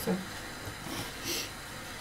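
Quiet room with faint handling sounds of hands working soft dough, and a brief soft scrape about a second in.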